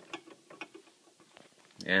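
Faint scattered clicks and light knocks from handling a small welded steel RC car trailer. A man's voice starts near the end.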